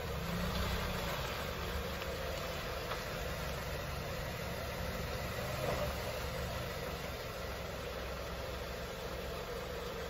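Dodge Journey SUV's engine running steadily at low idle as the vehicle creeps slowly forward and then backs up.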